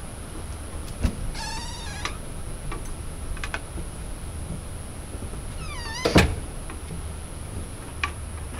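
A door opening and closing on a squeaky hinge. A latch clicks about a second in, followed by a short wavering squeak. Near six seconds a squeak glides downward and ends in a solid thump as the door shuts, and a latch clicks again at the very end.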